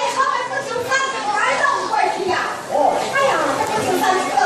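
Crowd of spectators chattering, many voices overlapping, children's voices among them.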